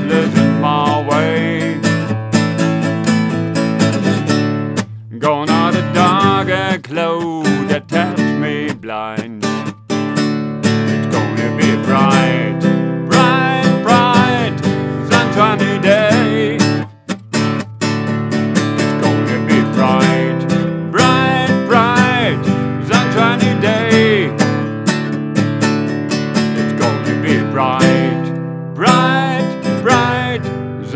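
Nylon-string classical guitar strummed in a steady rhythm, accompanying a man's singing voice.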